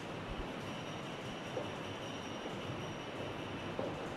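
Steady background room noise: a low, even hiss and rumble with no speech.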